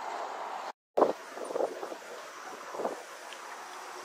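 City street traffic noise with wind buffeting the microphone in a few soft gusts; the sound cuts out completely for a moment just under a second in.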